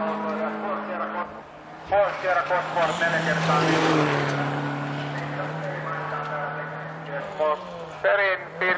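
A rally car's engine held at high revs as it slides past on a gravel stage, its note steady for several seconds and then dropping near the end.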